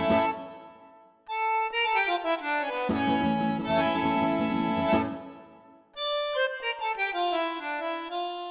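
Instrumental background music: held, reedy chords that die away twice, each followed by a run of notes stepping downward in pitch.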